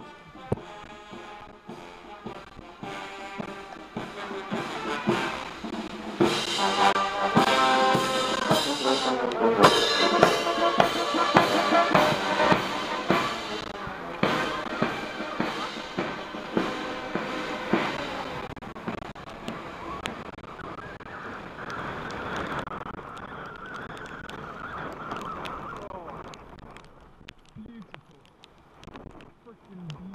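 A British Army guards' marching band playing brass and drums. It swells to its loudest over the first several seconds, then fades away gradually.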